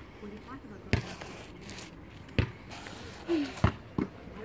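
Three sharp slaps on concrete, about a second and a half apart, as hands strike the driveway to push a rider lying prone on a Ripstik caster board. A short vocal sound comes just before the third slap.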